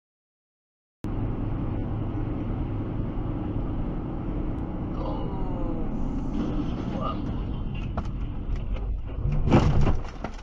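Steady road and engine rumble inside a moving car. It starts suddenly about a second in after silence, and a loud sudden burst comes near the end.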